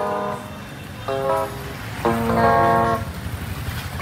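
Electric guitar playing a slow bolero melody of single held notes, amplified through a small horn loudspeaker. A motorbike engine runs by in the background in the second half.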